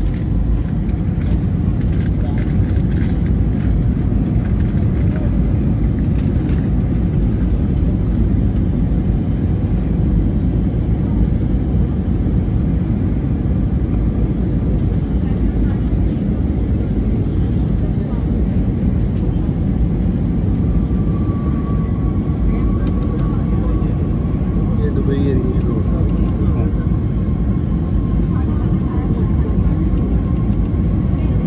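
Steady jet airliner cabin noise on approach: a constant low rumble of the engines and airflow, heard inside the cabin. About two-thirds of the way in, a faint steady high whine joins it and holds to the end.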